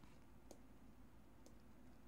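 Near silence with two faint clicks, a second apart, from a pen stylus on a writing tablet as a word is handwritten.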